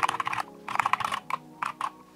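Typing on a computer keyboard: quick runs of keystrokes through the first second or so, then a few separate key presses.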